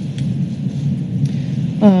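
Steady low rumbling background noise on the meeting-room microphone during a pause in speech, ending with a woman's 'uh'.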